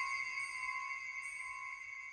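A single bell-like chime, struck just before and ringing on as several steady high tones that slowly fade.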